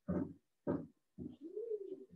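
A run of short, low animal calls about every half second, ending in one longer call that rises and then falls in pitch.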